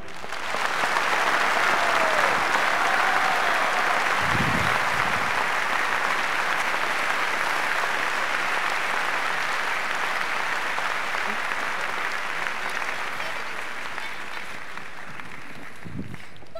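Large concert-hall audience applauding, building in the first couple of seconds and then slowly fading toward the end.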